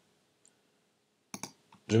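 Computer mouse clicks placing pen-tool anchor points: a faint tick about half a second in, then a sharp click and a lighter one shortly after, near the end.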